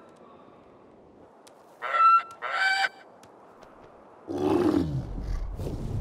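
Two short, pitched flamingo calls about two seconds in, then a louder, deep animal grunt from a hippo that falls in pitch and trails off into a low rumble.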